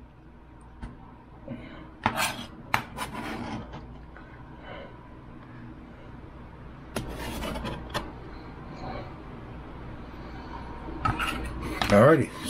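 Kitchen knife and hands scraping and knocking on a cutting board as chopped vegetables are gathered up and cleared off, in scattered short scrapes and taps with a busier stretch about seven seconds in. A low steady hum runs underneath.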